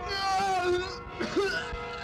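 A man's drawn-out moan, falling in pitch, as a stabbed character dies theatrically, over background music holding a steady note.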